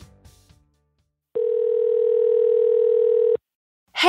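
The tail of a music sting fades out. After a short silence, a single steady telephone ring tone sounds for about two seconds and cuts off, marking a call-in caller being connected.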